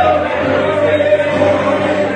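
Live gospel music: a church band of electric guitar, bass guitar and keyboard plays while a woman sings lead into a microphone, holding long notes, with other voices joining in.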